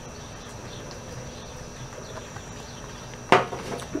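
Outdoor ambience with a steady, high-pitched insect drone. A single sharp knock comes a little over three seconds in, followed by a brief muffled noise.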